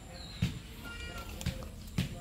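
A short, high animal call about a second in, with soft low thumps about half a second in, at one and a half seconds and at the end.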